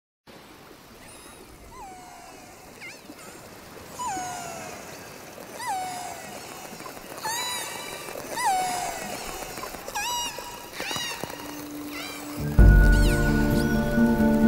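Killer whale calls: a series of pitched calls, each rising and then sweeping down, about one every second and a half. Near the end, music with steady held notes comes in and becomes the loudest sound.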